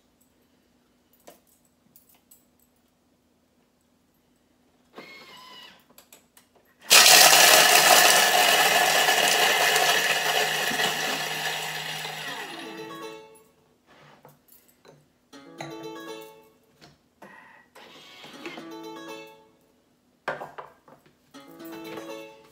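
Thermomix kitchen machine crushing ice with its blade at speed six. About seven seconds in, a loud grinding rattle starts suddenly, then dies away over about six seconds as the ice turns to slush.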